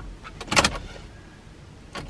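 A Toyota's ignition key being turned: a click at the start and a short rattle about half a second in, with no starter cranking and no engine catching, a sign of a flat battery.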